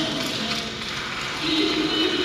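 Indistinct talking with no clear words, at about the level of the surrounding speech.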